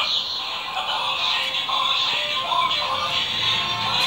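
Hasbro Yo-kai Watch toy playing a medal's tribe song, electronic music with synthetic singing, after a Yo-kai medal is slid into it.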